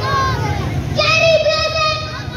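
A boy's high voice singing or chanting into a microphone: a short gliding phrase, then a long held high note from about a second in.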